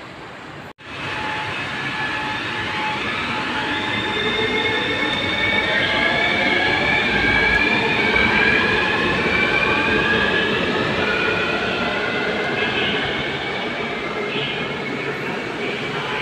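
Taipei Metro Circular Line train pulling into an elevated station behind platform screen doors. It is a steady rail and motor noise with whining tones that slide in pitch, swelling toward the middle and easing as the train slows to a stop.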